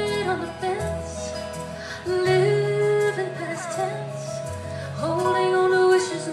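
Live acoustic band playing a slow song: a long-held melody line with sliding, bending notes over steady bass and guitar chords.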